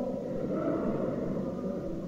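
Faint, steady background noise with no distinct events, a pause in a recorded talk.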